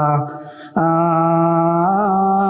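A man's voice chanting in long, drawn-out held notes, in the manner of Ethiopian Orthodox liturgical chant. One note fades away about a quarter second in, and after a short gap a new held note starts abruptly just under a second in.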